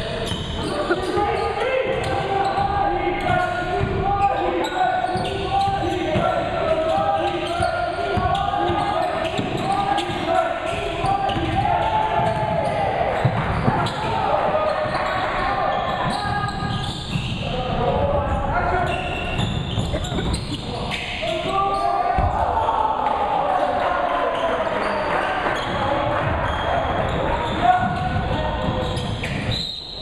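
A basketball game in a school gymnasium: a basketball bouncing on the hardwood floor as it is dribbled, with players and onlookers calling out indistinctly throughout.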